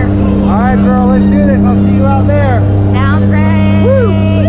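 Steady drone of a skydiving jump plane's engines heard inside the cabin, with short voice calls rising and falling over it.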